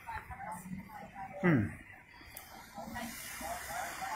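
Indistinct voices of people talking at a distance, with a brief loud sound about one and a half seconds in that falls steeply in pitch, and a steady hiss in the second half.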